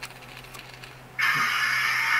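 A sudden hissing puff lasting about a second and a half, starting just over a second in. It is the sound of the model railroad track shorting out at a slow-moving turnout, with faint quick ticking before it.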